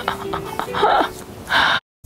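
A woman laughing in two short breathy bursts over quiet background music, cut off abruptly near the end.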